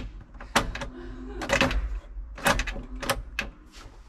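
Several sharp, irregular clicks as the tractor's ignition key is turned. The engine does not crank because the battery is flat.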